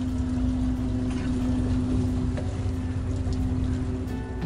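A fishing boat's engine running steadily: a low rumble with a constant hum.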